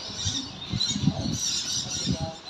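Birds chirping and twittering, a steady patchy chatter of high calls.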